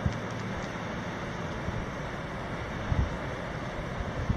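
Steady outdoor rush of distant surf, with wind buffeting the microphone in the low range and a brief gust about three seconds in.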